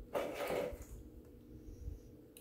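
A brief rustle of a leather Coach Legacy shoulder bag being picked up and handled, then a soft low bump near the end.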